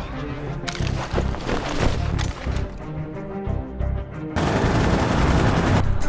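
Rapid, irregular rifle gunfire, many shots over background music. About four seconds in, a steady loud hiss takes over.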